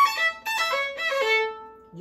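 Violin bowed through a quick run of notes stepping down in pitch, ending on a longer note that fades out near the end.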